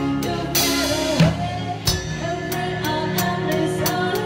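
Live band playing a pop song: a drum kit keeps a steady beat under a sung melody and a low bass, with a cymbal crash about half a second in.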